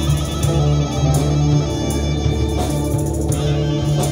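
A live drone-rock band playing an instrumental passage: electric guitars sustaining long notes over a heavy, steady bass drone, with regular cymbal strokes above.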